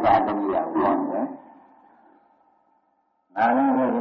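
An elderly monk's voice preaching in Burmese on an old recording. He breaks off about a second in, the sound trailing away into a short silence, and starts speaking again near the end.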